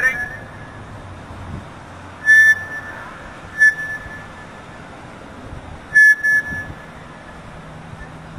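Three short, steady high-pitched whistle-like tones from a handheld megaphone, heard from a distance, with a low background in between.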